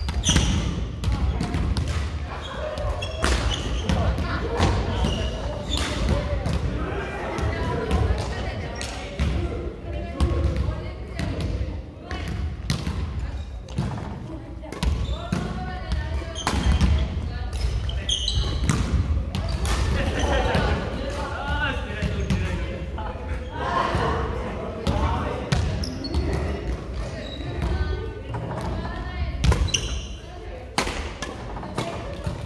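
Badminton rallies in a large echoing sports hall: sharp cracks of rackets striking the shuttlecock and players' feet thudding on the wooden court, over indistinct voices.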